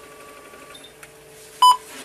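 A single short electronic beep from an X-Rite DTP41 strip-reading spectrophotometer about one and a half seconds in, the signal that a colour-chart strip has been read. Before it there is only a faint steady hum.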